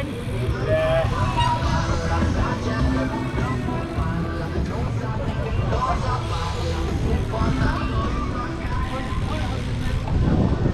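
Wind rumbling steadily on the microphone of a camera carried by a rolling cyclist, over music and voices from a public-address loudspeaker at the start.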